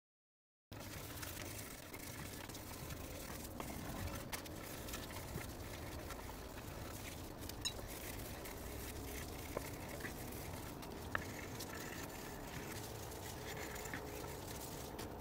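Silent for about the first second, then a steady scratchy rubbing as a wooden palette knife handle is lightly hand-sanded between coats of Tru-Oil finish, with a few small clicks.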